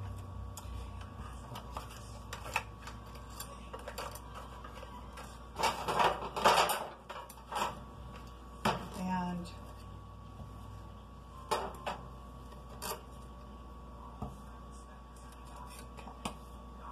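Scattered clicks and light knocks of kitchen items being handled on a countertop as hand-mixer beaters are lifted from a bowl of frosting, with a louder scraping rustle about six seconds in.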